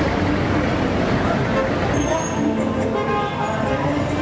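Dense outdoor street din: many voices from a crowd mixed with traffic noise and amplified sound from stage loudspeakers. Steady pitched tones come in about halfway through.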